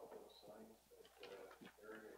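Near silence with faint, indistinct voices speaking too quietly to make out words.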